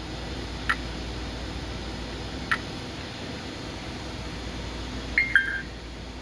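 FlySky Noble NB4 radio transmitter giving two short key ticks about two seconds apart as its touchscreen is pressed, then a quick two-note falling beep near the end, over a steady low hum.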